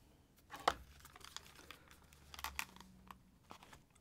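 Over-ear headphones being handled and set on a plastic kitchen scale: a few light, scattered clicks and rustles, the sharpest about half a second in.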